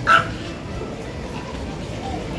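A Yorkshire terrier gives one short, high-pitched bark at the very start, over steady background noise.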